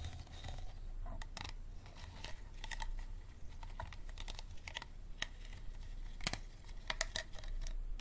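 Fingertips and nails tapping on an empty hard plastic water bottle: irregular quick clicks on the thin ridged plastic, several a second, bunching into rapid runs in places.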